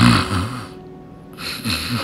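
A man snoring: one snore at the start and another near the end, with a quieter stretch in between.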